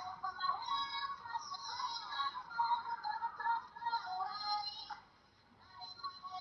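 Pop music with singing, thin and without bass, that breaks off about five seconds in.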